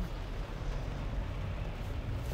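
Steady low rumble of a moving car's road and engine noise heard inside the cabin, on a rain-wet road.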